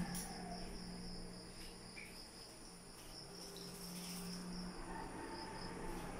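Steady high-pitched chirring of insects, with a low steady hum underneath.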